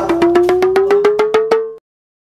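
A quick run of about fourteen sharp, ringing taps, coming slightly faster as they go, over a single tone that rises steadily in pitch. It cuts off abruptly near the end.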